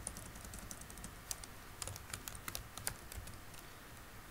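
Computer keyboard being typed on: an irregular run of light key clicks as a short word is entered, busiest in the second half.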